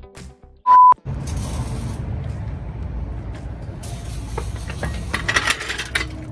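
Background music ends, then a short, loud single-pitch beep, then workshop noise with light metallic clinks and rattles.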